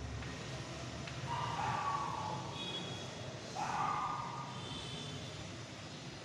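Chalk scraping on a chalkboard in two short drawing strokes, about one and a half and three and a half seconds in, over a steady low room hum.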